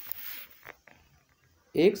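A man's quick breath drawn in between sentences of a spoken narration, a short hiss followed by a faint mouth click and a pause, with his voice resuming near the end.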